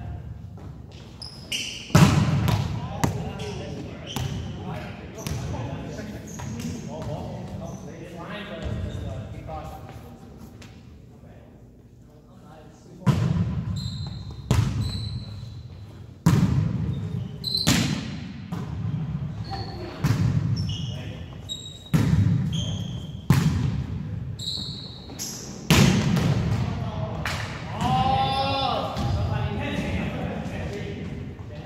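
Indoor volleyball rally in a gym: the ball struck by hands and arms and hitting the floor in sharp smacks, more than a dozen over the stretch, each echoing off the hall's walls. Short high squeaks of sneakers on the hardwood floor and players' shouts come between the hits.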